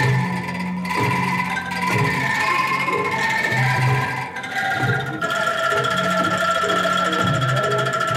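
Angklung ensemble playing a tune: shaken bamboo angklung hold sustained notes, moving to a new chord about halfway through, over a steady low percussion beat.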